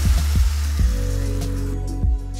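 Background music with sustained bass notes, over the hiss of white wine sizzling as it hits a hot pan of sautéed vegetables and tomato paste to deglaze it. The hiss dies away near the end.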